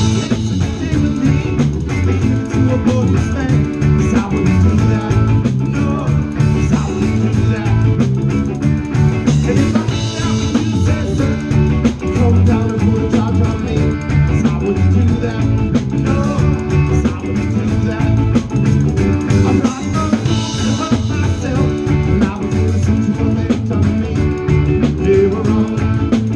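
Live rock band playing loudly without a break: drum kit, electric guitars and bass, with the drums close and prominent from right behind the kit.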